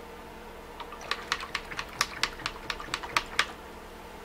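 A quick, uneven run of about fifteen light, sharp clicks lasting two and a half seconds, starting about a second in.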